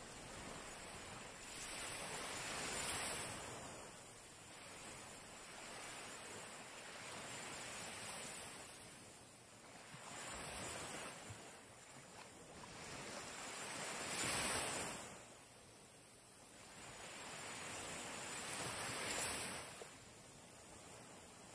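Small waves washing onto a sandy shore, faint, each swelling and falling away about every four to five seconds, the loudest about two-thirds of the way through.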